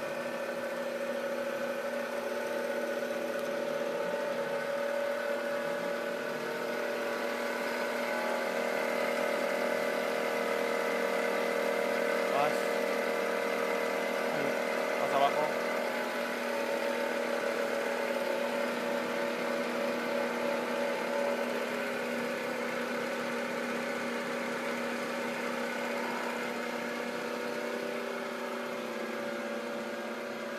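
Rosa vertical milling machine's spindle drive running steadily at a high setting of its variable-speed drive, a mechanical whir with several steady tones. The pitch shifts slightly about eight seconds in and again after about twenty seconds, and there are two light clicks near the middle.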